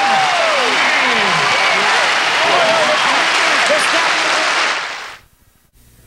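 Studio audience applauding and cheering, a dense clapping wash with shouted whoops in it, fading out about five seconds in.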